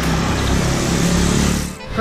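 A motor scooter's small engine running close by, with a steady rush of road and wind noise, dropping away shortly before the end.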